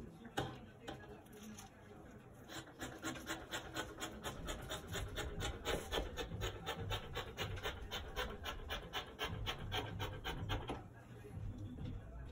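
Fabric scissors snipping through shirt fabric in a quick, even run of about four snips a second, trimming the edge of a cut-out piece; one louder snip comes about half a second in, and the run stops a second or so before the end.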